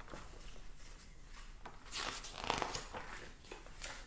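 Faint rustling and handling noise from a picture book being moved and its page turned, with a stronger rustle about halfway through.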